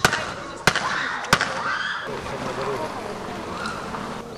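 Three sharp cracks at an even pace, about two-thirds of a second apart, followed by a murmur of voices outdoors.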